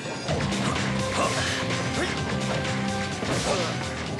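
Action-cartoon fight soundtrack: a driving score with a repeating low bass figure, overlaid with several punch and crash sound effects.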